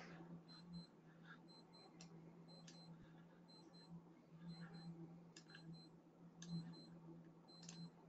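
Near silence: room tone with a faint low hum and faint paired ticks about once a second.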